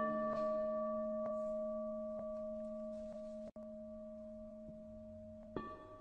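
A struck Buddhist bowl bell ringing out between passages of the chanted mantra, its few pure tones slowly dying away over about five seconds, with faint regular taps underneath about once a second.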